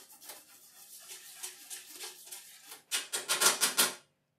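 A bristle paintbrush being worked: faint rubbing for most of the time, then a quick run of brisk scratchy strokes in the last second.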